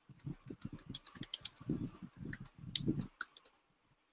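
Typing on a computer keyboard: a quick, irregular run of key clicks that stops shortly before the end.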